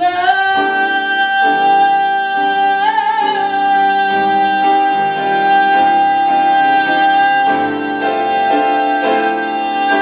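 A woman singing one long held high note, with a slight swell about three seconds in, over jazz piano chords that change every second or two.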